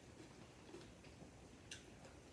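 Near silence: room tone with a few faint clicks, one sharper click near the end.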